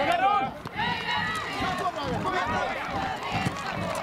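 Young football players and spectators shouting and calling over one another, several voices at once, many of them children's.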